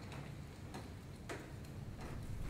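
A quiet concert hall with a few faint, sharp clicks as the flutist and string players raise their instruments, just before they start to play.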